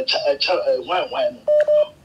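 A voice calling out over a phone line, then a short steady telephone beep about one and a half seconds in.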